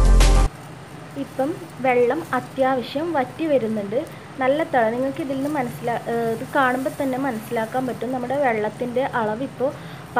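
Talking over a steady low background of tea bubbling at a hard boil in a steel saucepan on a gas burner. A music track cuts off about half a second in.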